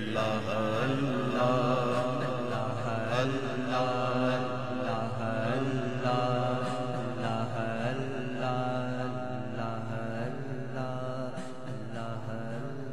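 A man's drawn-out melodic chanting of a naat, with his voice gliding in long held phrases over a steady low drone.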